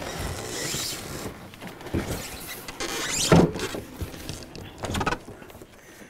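Cardboard carton of a heavy ice maker scraping, rubbing and squeaking against the floor and hands as it is tipped over onto its top, loudest about three seconds in.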